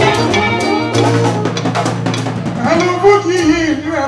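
Live fuji band playing, with a drum kit and percussion over a sustained bass guitar line. A lead voice comes in near the end.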